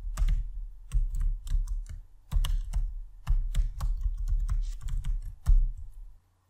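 Typing on a computer keyboard: keystrokes come in several short runs with brief pauses between them.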